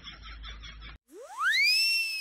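A whistle-like sound effect that sweeps steeply up in pitch and then slides slowly down, starting about a second in after a sudden cut. Before the cut, a rapid repeating chatter from the previous clip stops abruptly.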